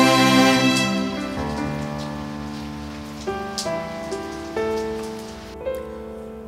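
Soft, sad instrumental background score: held notes with new ones entering about every second, gradually getting quieter.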